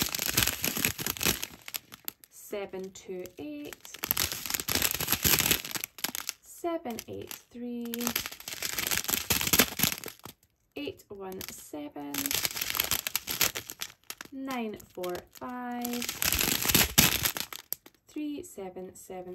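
Small plastic bags of diamond painting drills crinkling as they are handled and held up, in about five bursts of a couple of seconds each, alternating with short spoken words.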